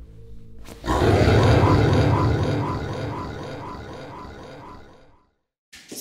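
Horror film score: a quiet low drone, then about a second in a sudden loud sting with a deep rumble and a fast pulsing texture, fading away over about four seconds.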